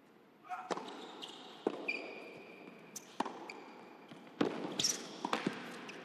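Tennis serve and rally on an indoor hard court: sharp racket strikes on the ball, the first about half a second in and then roughly one a second, with shoes squeaking on the court between shots.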